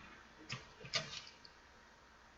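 Two faint taps about half a second apart, with a tinier third one after, from craft pieces being handled and pressed down on the work surface.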